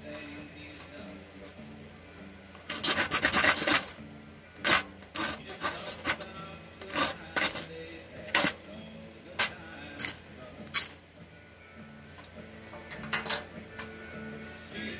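A ferrocerium rod struck again and again with a utility knife blade. A long burst of scraping comes a few seconds in, then about a dozen short, sharp scrapes spaced roughly a second apart, throwing sparks onto fatwood shavings.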